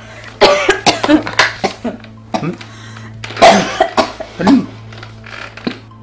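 A woman coughing hard in repeated fits while eating, as if choking on her food, over a steady low hum.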